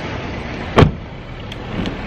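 A car door shut once, a single loud thud a little under a second in, over steady low background noise.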